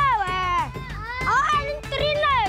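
A boy calling out, his voice high and sliding up and down in pitch.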